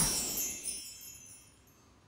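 Shimmering chime sound effect ringing out and fading away over about a second and a half, into near silence.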